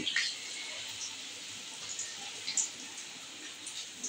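Besan-battered bread strips deep-frying in hot oil: a steady, even sizzle with a few light crackles.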